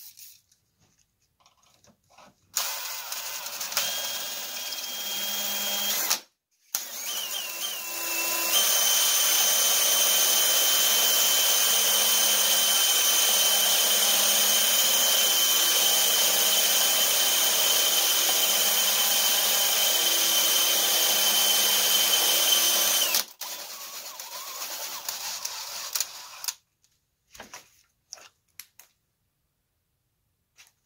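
DeWalt cordless drill running a diamond bit into a glass chandelier arm, grinding the glass. It starts a couple of seconds in, stops briefly near six seconds, then runs steadily with a high whine for about fifteen seconds, eases off and stops near the end.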